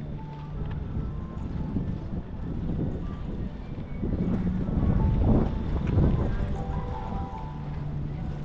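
Outdoor harbourside ambience with wind rumbling on the microphone and indistinct voices, swelling about four to six seconds in.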